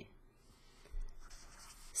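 Felt-tip marker writing on paper, faint: a soft knock about halfway through as it touches down, then a stroke as a curly brace is drawn.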